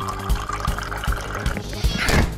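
Cartoon background music with a steady beat, over a sound effect of liquid pouring into a glass flask that stops shortly before the end.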